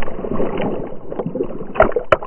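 Water splashing and churning close around a dog-mounted action camera as the dog plunges in and starts swimming, with a sharp knock near the end.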